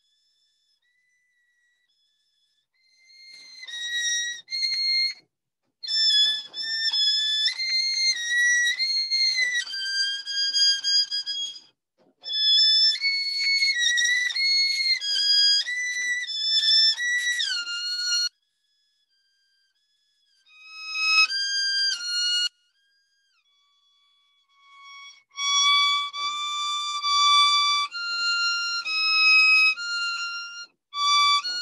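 Violin played in runs of stepwise notes, phrase after phrase with short pauses between them, starting about three seconds in. It sounds thin, coming through an online call. The teacher afterwards hears the notes as going a little sharp.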